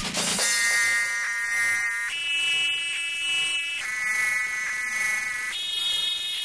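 Tekstyle electronic dance music in a breakdown: the kick and bass drop out, leaving a synth lead that alternates between a lower and a higher chord, changing about every one and a half to two seconds.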